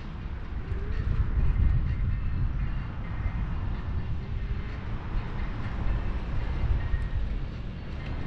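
Low, fluctuating rumble of wind and road noise picked up by a camera on a moving scooter, with city traffic around it.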